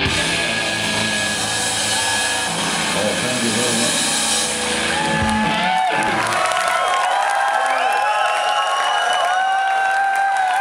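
A live rock band with electric guitar, drums and vocals playing loud through a club PA, the full band sound stopping about halfway through. The rest is the crowd cheering, shouting and whistling.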